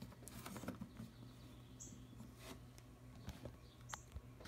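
Faint, scattered clicks and taps of a plastic Transformers action figure being handled and set down on a table, over quiet room tone.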